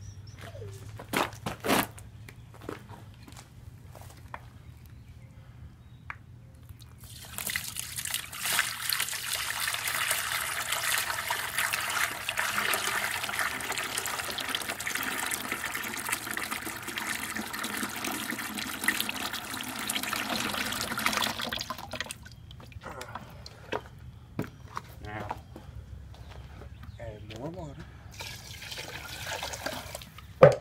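Clay slurry poured from a plastic bucket through a coarse wire-mesh screen into a tub, straining out rocks and sand. The steady pour runs for about fourteen seconds, starting about seven seconds in, after a couple of sharp knocks from handling the bucket.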